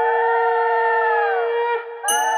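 Conch shell (shankha) blown in a long, steady note, joined by a second conch note that swells, then bends down in pitch and fades near the end.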